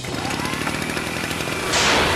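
Cartoon sound effect of a gas-spraying gadget: a rapid mechanical rattle with a rising whine, then a loud hiss of gas blasting from its nozzle near the end.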